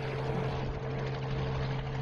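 Light helicopter flying low, its engine and rotor making a steady drone with a constant hum that holds one pitch.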